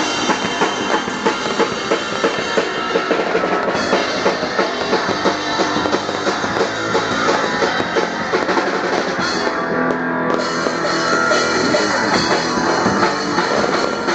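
Live rock band playing loud, a drum kit beating a steady driving rhythm under electric guitar.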